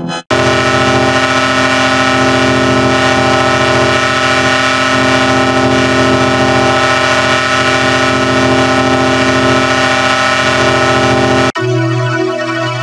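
A loud, steady synthetic chord of many stacked tones, like a held air horn, produced by a digital chorded pitch-shift effect. It cuts in just after the start, holds unchanged, and cuts off abruptly about half a second before the end.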